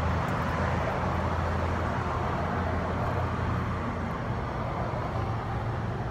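Steady road traffic noise: an even low rumble with a hiss over it, and no single vehicle passing by distinctly.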